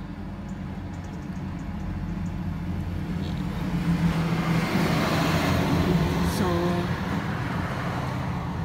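A motor vehicle driving past on the road, its engine hum and tyre noise swelling to a peak about five seconds in, then easing off.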